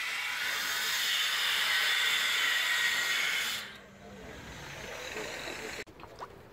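Handheld power tool cutting with a steady hiss that stops about three and a half seconds in.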